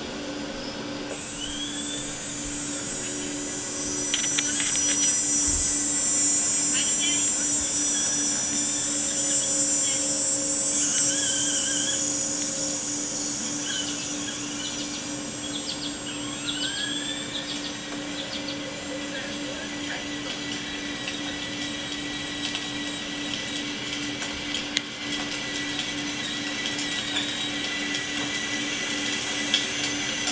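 Small electric motor of a battery-powered ride-on toy motorcycle whining steadily as it drives, with a constant low hum underneath; it is loudest for several seconds near the start. A few short rising tones come and go.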